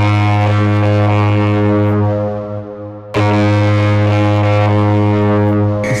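Ice hockey goal horn giving two long, low blasts, the second starting about three seconds in.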